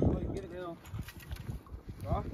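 Wind buffeting the microphone in irregular low rumbles, with faint voices in the background.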